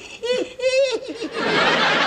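A man laughing in short, high-pitched bursts, joined about a second in by a sitcom studio audience laughing loudly.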